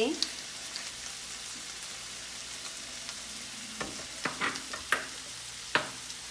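Diced chicken breast frying in a pan over high heat, a steady sizzle. A few sharp clicks and taps come about four to six seconds in.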